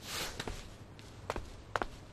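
Footstep sound effects for a cartoon character walking away: a soft rustle at the start, then a few light, sharp steps at an uneven pace.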